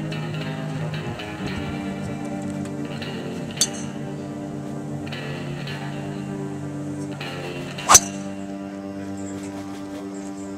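Guitar-led background music plays steadily. About eight seconds in, a single sharp crack rings out over it, the strike of a driver on a golf ball, with a fainter click a few seconds before it.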